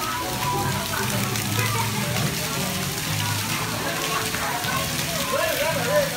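Splash-pad fountain jets spraying and splattering onto a wet floor in a steady hiss, with children's voices and crowd chatter mixed in.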